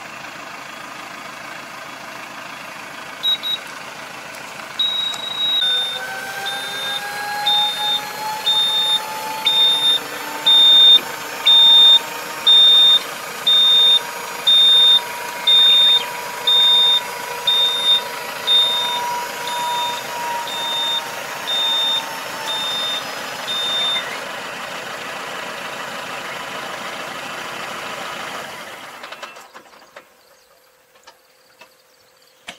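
Tractor engine running with a folding puddling harrow being unfolded on its hydraulics. An electronic warning buzzer beeps about once a second over a slowly rising hydraulic whine. The beeping stops a few seconds before the engine sound falls away near the end.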